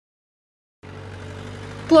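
Silence at first, then about a second in a steady low hum of background noise with a faint engine-like drone, lasting until a voice starts at the very end.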